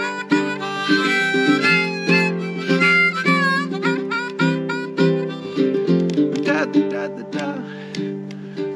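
Blues harp (diatonic harmonica) playing a melody over strummed chords on a baritone ukulele, an instrumental break between sung verses.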